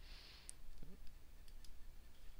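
A few faint computer mouse clicks, the first and sharpest about half a second in, the others weaker about a second later.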